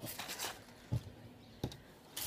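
Faint rustling of hands moving over a worktable, with a few light taps as small pieces are handled and set down.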